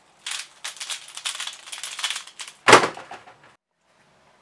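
Magnetic X-Man Bell pyraminx turned fast by hand: a quick run of clicking turns lasting about three seconds, with one louder snap about two-thirds of the way through.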